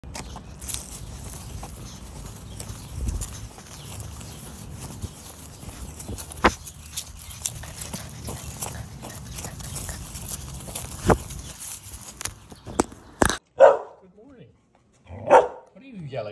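Wind rumbling on the microphone, with scattered knocks from handling, as a golden retriever puppy runs across grass. Near the end the sound cuts to a quiet room, where a golden retriever barks twice in short, loud barks.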